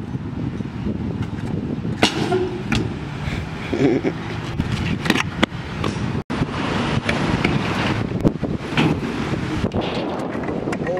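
Stunt scooter wheels rolling on concrete, a steady rumble with wind on the microphone, broken by several sharp clacks as the scooter lands and strikes the metal ramps.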